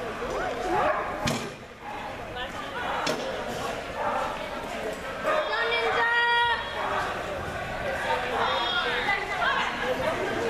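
A dog agility teeter board banging down once, about a second in, as the dog tips it, among voices in a large hall.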